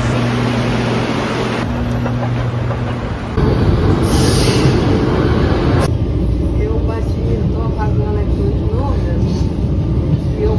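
Metro train rumbling, starting suddenly about three seconds in, with a burst of hiss a second later. Before it there is a steady low hum.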